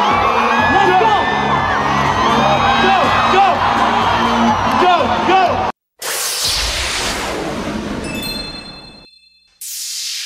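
Live hip-hop concert sound: a bass-heavy track over the PA with crowd voices shouting. About six seconds in it cuts off, and a logo sting follows: a long whoosh with a few high steady tones, then a second whoosh near the end.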